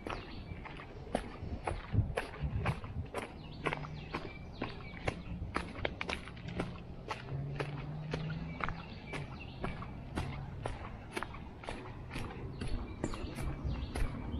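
Footsteps crunching on dry fallen leaves along a woodland trail, a steady walking pace of about two steps a second.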